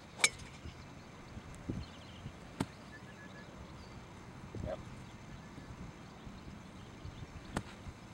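Three sharp clicks of golf clubs striking balls, the first about a quarter second in and much the loudest, the others about two and a half and seven and a half seconds in, with a couple of softer thuds between.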